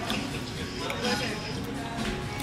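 Indistinct murmur of voices and general dining-room noise in a busy restaurant, with no clear words close to the microphone.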